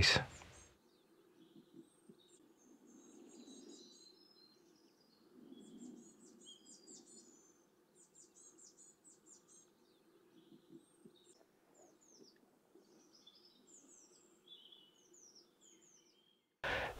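Faint birdsong: several small birds chirping and trilling on and off throughout, over a low, steady outdoor background hum.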